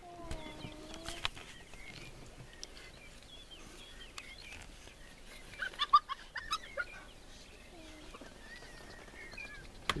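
Spotted hyenas calling: a drawn-out whining call of about a second at the start, then a short burst of squeaky, clucking calls about six seconds in, over faint bird-like chirps.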